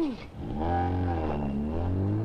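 A car engine running, its pitch sinking for about a second and then climbing as it revs up and accelerates.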